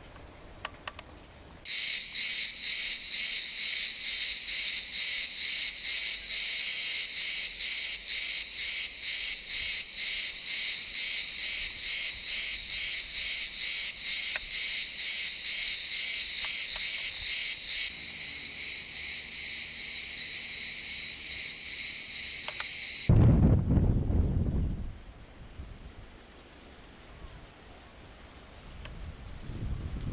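A cicada singing: a loud, high buzz starts suddenly about two seconds in and pulses about twice a second. It then runs on as a steady buzz for a few seconds and cuts off suddenly. A brief low rumble follows as it stops.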